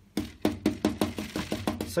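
A stiff, scratchy bristle brush stabbed repeatedly onto a canvas, making a quick, uneven run of dry taps, several a second.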